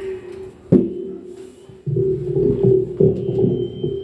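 Acoustic-electric guitar being handled and played: a note rings from the start, the body takes a sharp knock just under a second in, then strings are strummed from about two seconds in, ahead of a sound check.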